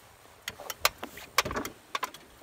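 A handful of sharp knocks and clicks on a skiff's deck as a push pole is worked hand over hand.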